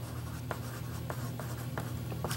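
Chalk scratching and ticking faintly on black construction paper as a moon shape is drawn, over a steady low hum.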